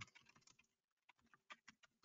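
Faint typing on a computer keyboard: a handful of quiet keystrokes, the clearest two about a second and a half in.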